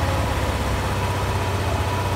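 Malaguti Madison scooter engine idling steadily, an even low pulsing hum.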